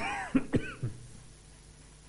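A person coughing: a quick run of about four coughs within the first second.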